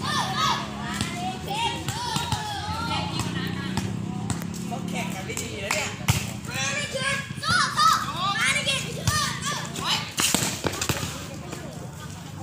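Several people calling out and shouting over one another during a volleyball game, with a few sharp slaps of hands striking the ball.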